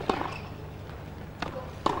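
Tennis rally: sharp knocks of the ball off rackets and the court, one at the start and two close together near the end.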